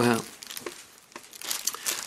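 Thin Bible pages being leafed through: a soft paper crinkling and rustle with a few faint clicks while a passage is looked up.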